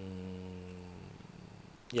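A man's long, level hesitation hum ("mmm") held on one low pitch, fading out about a second in. Then quiet room tone until he starts speaking again at the very end.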